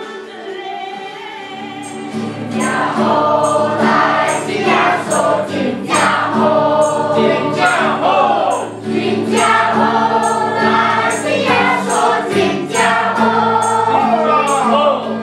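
A group of children and adults singing a Christmas carol together as a choir. The singing grows fuller and louder about two seconds in, and a regular high ticking keeps the beat.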